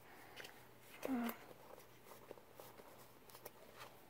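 Quiet room with faint rustles and light taps as plush toys and a toy steamer basket are handled on carpet, and one short voice sound about a second in.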